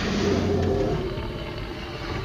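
Outdoor ambience from the video clip playing back in the editor's preview: a steady rush of noise with a low hum, slowly fading.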